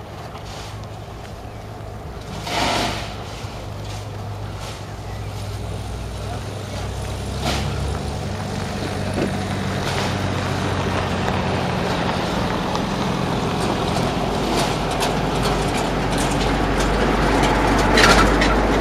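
A diesel-hauled passenger train approaching: a steady low engine drone that grows gradually louder, with wheel clicks over the rail joints building toward the end.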